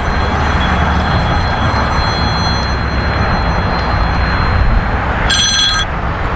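Steady wind noise buffeting the microphone. Near the end a smartphone sounds a short electronic ring tone of about half a second as a call comes in.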